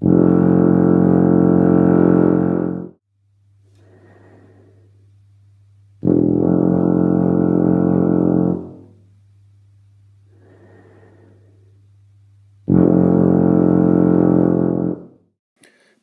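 Tuba playing three long, sustained low-register notes, each about two and a half to three seconds, with pauses between them.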